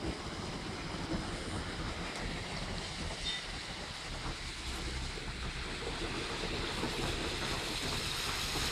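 Wind buffeting the microphone: a steady rushing rumble that grows a little louder near the end.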